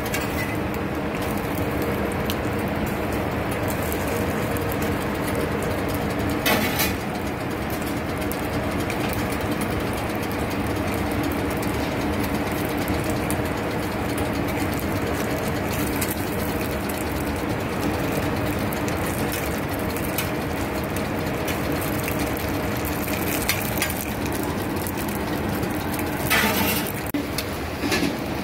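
Steady mechanical hum with a hiss under it, and a brief scraping clatter about six and a half seconds in and again near the end.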